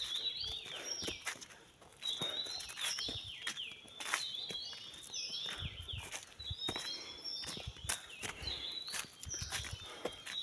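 A bird in the trees repeating a short, high call that falls in pitch, over and over, with footsteps on a forest path underneath.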